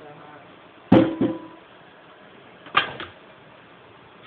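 Kitchen clatter: a sharp knock of hard objects on the counter about a second in, leaving a brief ringing tone, then a second knock just after and another short clatter near three seconds.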